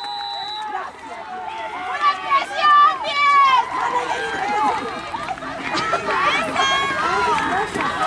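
A referee's whistle holds one steady high note and cuts off just after the start, blowing the play dead. Then players and onlookers shout and call out across the field, with several voices overlapping and the loudest calls a couple of seconds in.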